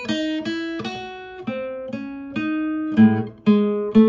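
Steel-string acoustic guitar playing a slow single-note line, about two to three notes a second, each plucked and left to ring, stepping up and down in pitch, with a couple of fuller two-note sounds near the end. The line is a scale built on a chord shape, each chord tone reached by a half step from below or a whole step from above.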